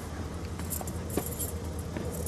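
Keys jangling in short clusters about a second in, with a single click, over the steady low hum of a car engine idling.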